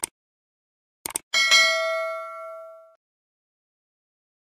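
Subscribe-button animation sound effect: a mouse click, then a quick double click about a second in, followed by a bright notification-bell ding that rings for about a second and a half and fades away.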